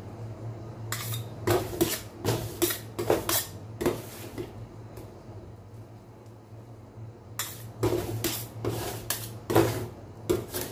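Two steel spatulas chopping, tapping and scraping ice cream mix on a stainless steel cold plate, in two runs of rapid metal-on-metal clatter with a quieter pause around the middle. A steady low hum runs underneath.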